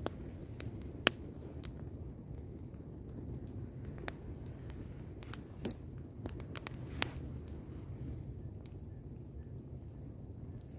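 Wood fire burning with a plastic DVD case in the flames: scattered sharp crackles and pops, the loudest about a second in, over a steady low sound of the flames.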